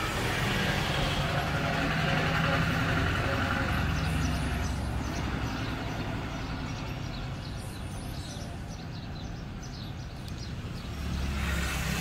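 Steady rumble of vehicle traffic with a hiss, swelling over the first few seconds, easing off, and swelling again near the end.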